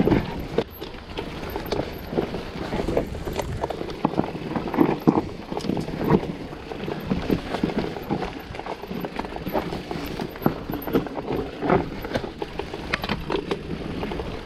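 Full-suspension mountain bike riding down a rocky dirt singletrack: irregular rattles and knocks from the bike's chain, frame and suspension as it rolls over stones and roots, over a steady rumble of tyres on dirt.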